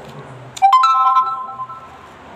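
Electronic notification chime: three quick notes, each higher than the last, that start suddenly and ring out for about a second.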